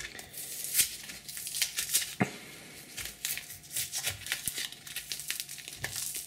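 Hand picking and pulling cured expanding polyurethane foam and blue painter's tape off a statue base: irregular crinkling, tearing crackles.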